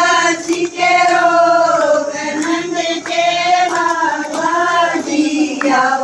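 A group of women singing a Haryanvi devotional bhajan together in unison, in long held lines, with hand-clapping along.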